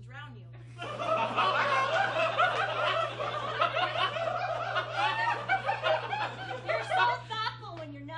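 Theatre audience laughing together: a loud burst of many voices laughing at once that starts about a second in, holds for several seconds and dies down near the end.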